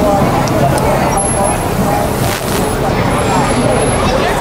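Busy city-street ambience: a steady hubbub of voices over traffic noise.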